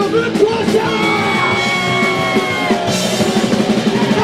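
Live rock band playing, a male vocalist singing and shouting over electric guitars and bass. A long high note is held through the middle.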